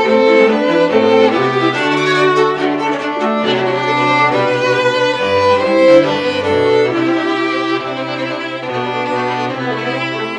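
A string quartet of two violins, viola and cello playing continuously. The upper parts move through notes above a lower cello line that changes pitch about once a second.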